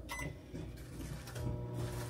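Microwave oven being started: faint clicks and a short keypad beep, then from a little over a second in the steady electrical hum of the oven running.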